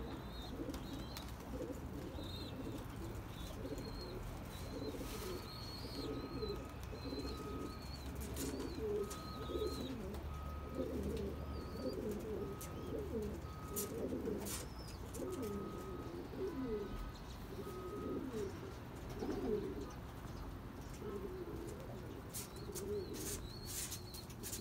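Domestic pigeons cooing continuously, with small birds chirping higher up. A faint beep repeats roughly once a second through the middle stretch.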